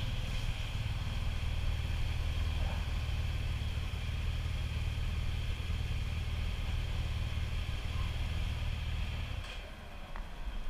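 Motorcycle engine idling close by, a steady low running that cuts out about half a second before the end.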